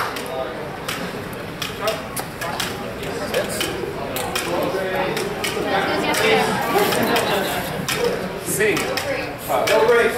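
Indistinct chatter of people in a large hall, with irregular sharp clicks and metallic clinks scattered throughout, typical of gear and steel training swords being handled between bouts.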